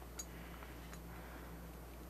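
Faint handling noise as a crocheted yarn cozy is worked down over a ceramic teapot, with one light click just after the start, over a steady low hum.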